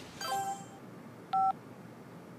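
Mobile phone tones: a short chime of several notes, like a message alert, then about a second later a brief, louder two-tone keypad beep.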